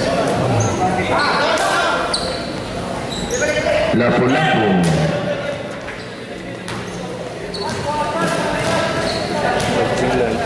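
A basketball bouncing on a hard court during live play, echoing in a large gym, with players and onlookers shouting.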